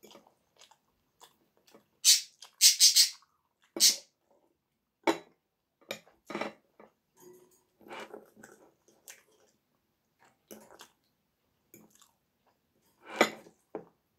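Close-miked eating sounds: chewing and mouth noises, with irregular sharp clicks from a fork against the plate and glass bowl. A few louder bursts stand out, the strongest about two to three seconds in and another near the end.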